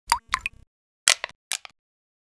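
Cartoon-style pop sound effects of an animated logo sting: four short plops in two pairs, the first pair with a quick upward pitch slide.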